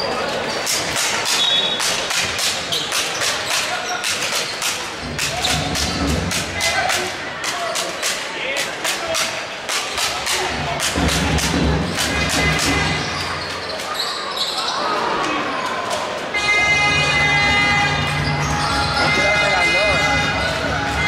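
Indoor basketball game in a large hall: a ball bouncing on the hardwood court in a run of sharp knocks, over the voices of the crowd and players. Near the end a steady held tone of several pitches joins in.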